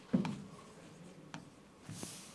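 Writing on a board: a short knock as the pen meets the board just after the start, then faint scratching strokes and a couple of light taps.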